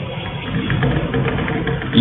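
Chalk writing on a blackboard: a run of short scratching and tapping strokes over a steady low background hum.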